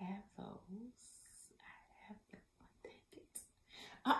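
A woman whispering and murmuring softly to herself, a few quiet syllables at a time, loudest in the first second.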